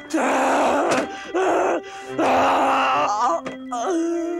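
A person groaning loudly in three long, strained bursts over background music.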